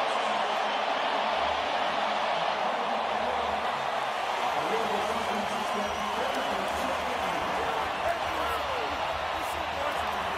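A large stadium crowd cheering steadily after a touchdown, a dense, even wash of many voices.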